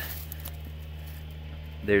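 Steady low background hum with faint outdoor room tone and no distinct event. A man starts speaking near the end.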